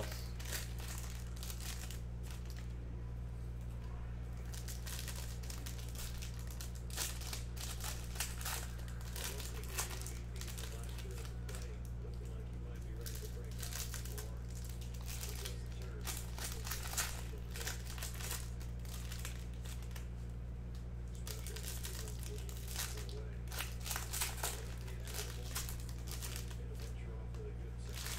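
Foil wrappers of Topps Chrome baseball card packs crinkling and tearing as hands open them and handle the cards, in irregular bursts. A steady low hum runs underneath.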